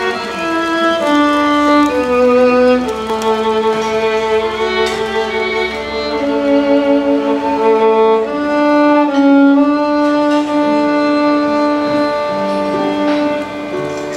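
Two violins playing live in slow, held notes, one line above the other in harmony, over acoustic guitar accompaniment.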